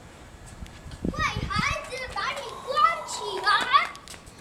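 A young child's high-pitched excited squeals and cries, a string of short calls that rise and fall in pitch, starting about a second in.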